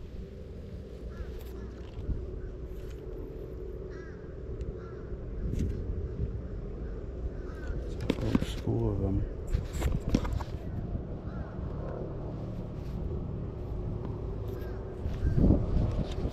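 Birds calling, with a few harsh caw-like calls about eight to ten seconds in, over a low rumble.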